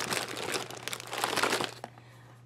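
Foil and plastic blind-bag toy packets crinkling and rustling as a hand rummages through a heaped pile of them. The crackling stops shortly before the end.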